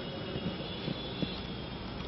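Steady background room noise, a low hum and hiss, with a few faint ticks.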